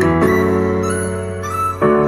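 Instrumental music with sustained keyboard chords, played through Wharfedale Diamond active floor-standing speakers in a sound test. A new chord is struck just before the end.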